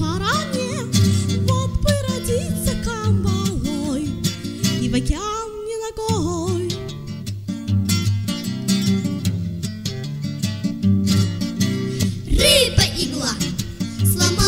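A bard song with acoustic guitar accompaniment and singing, with a long held sung note about five seconds in.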